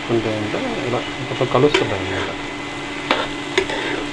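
Sliced bitter gourd frying in a steel pan, stirred with a metal slotted spoon: a steady sizzle under the scrape of the spoon through the vegetables, with a few sharp clinks of the spoon against the pan.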